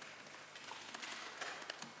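Faint room tone, with a few faint clicks.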